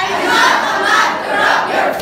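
Speech choir: a large group of young voices loudly declaiming together in unison.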